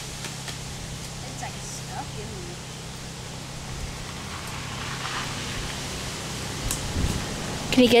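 Quiet outdoor background with a steady low hum and a few faint distant voices. There is a soft thump about seven seconds in, and a voice begins right at the end.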